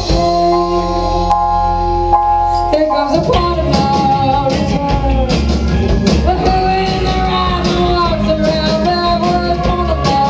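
Live rock band playing a song on electric guitar, bass guitar, drums and keyboard. A chord is held steady for about the first three seconds before the playing moves on to shifting, bending notes.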